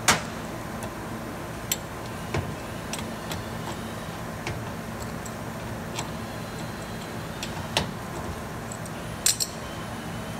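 Wrench on the take-up nuts of a stainless-steel conveyor frame, giving scattered single metallic clicks and clinks as it is repositioned and turned. The loudest click comes at the very start, with a quick pair near the end. A steady low hum runs underneath.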